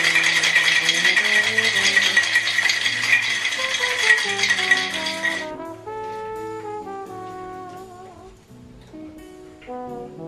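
Ice rattling inside a tin cocktail shaker as it is shaken to chill the drink, stopping abruptly about five and a half seconds in. Background music with a melody plays throughout.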